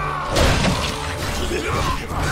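A sharp shattering crash about half a second in, as a heavy battle-axe blow lands in an animated fight scene. It plays over a film score.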